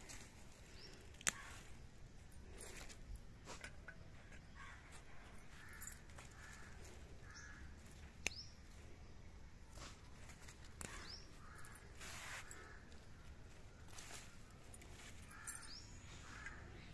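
Faint outdoor garden ambience with birds calling now and then, including short rising chirps. Two sharp snaps stand out, about a second in and again about eight seconds in, as green bean pods are picked from the vine.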